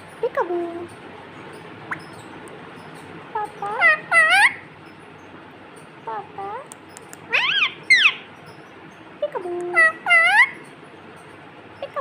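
Pet green parakeet calling in about five short bursts of sweeping, rising and falling, speech-like notes.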